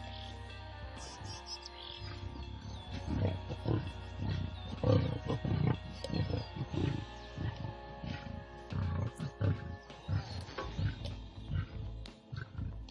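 Lions growling at a kill as a male joins the feeding lionesses. The growls come in short, irregular bursts from about three seconds in, over background music.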